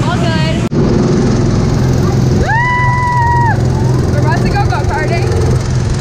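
Go-kart's small engine running steadily at a constant drone. A rider's high whoop, held level for about a second, sounds about two and a half seconds in, with bits of voice after it.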